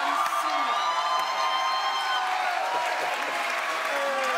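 Studio audience laughing, applauding and cheering in response to a punchline, a steady wash of crowd noise.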